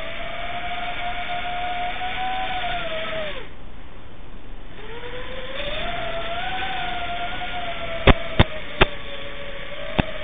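Small quadcopter's electric motors whining, heard through the onboard camera's microphone over the video link. About a third of the way in the pitch sags and the whine fades out for about a second as the throttle comes off, then climbs back as the motors spool up again. Three sharp pops come near the end.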